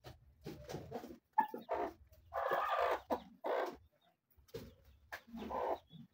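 Chickens clucking, a string of short calls one after another as they gather for scraps of food.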